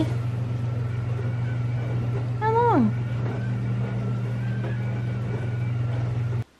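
A steady low hum, with one short, steeply falling voiced sound about two and a half seconds in.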